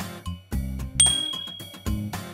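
Background music with a steady beat, and a single bright ding about a second in: a notification-bell sound effect.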